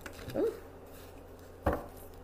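Tarot cards being handled on a cloth-covered table, with one sharp knock near the end as the deck is tapped or set down. A short rising hum comes about half a second in.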